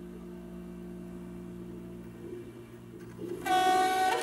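Experimental air-driven tube instrument sounding a steady low drone of held tones. About three and a half seconds in, a much louder, bright held tone with many overtones breaks in.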